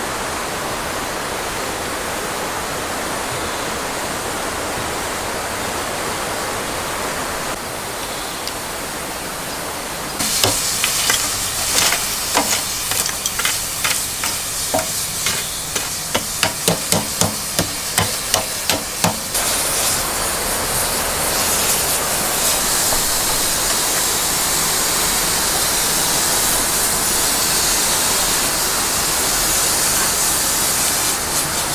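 A steady rushing noise at first. About ten seconds in, lumps of charcoal clink and knock as they are stirred and spread with a wooden stick in a steel mangal, for about nine seconds. Then a steady hiss, the sizzle of lamb sausages in a wire grill basket held over the hot coals.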